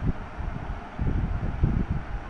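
Low rumbling noise on the microphone, coming in irregular puffs, with no speech.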